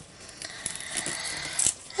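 Card stock being handled and slid across a cutting mat: a soft scraping rustle, with a couple of light taps near the end.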